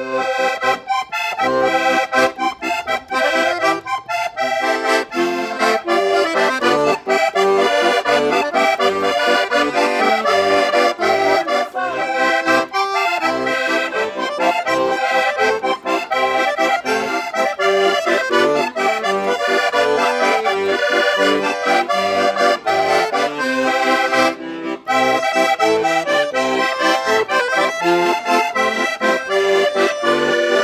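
Portuguese concertina and a chromatic button accordion playing a traditional Portuguese tune together, with a brief break about three-quarters of the way through.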